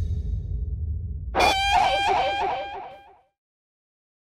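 Low rumbling drone, joined about a second and a half in by a high, wavering pitched tone with a rapid wobble. Both fade out about three seconds in.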